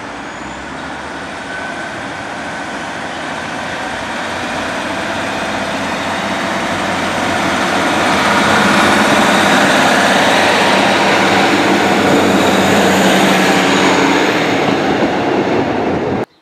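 Class 150 Sprinter diesel multiple unit running past close by, its diesel engines and wheels on the rails growing steadily louder as it comes near. It is loudest from about halfway through, then cuts off abruptly at the end.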